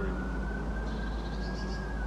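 A siren's wail: one high tone slowly rising and then beginning to fall, over a steady low rumble.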